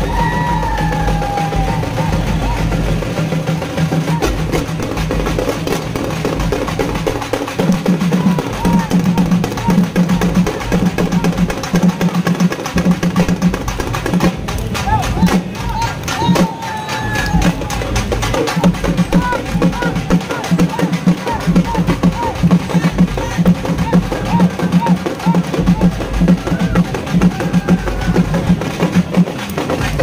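Loud procession music with fast, steady drumming, and crowd voices shouting over it.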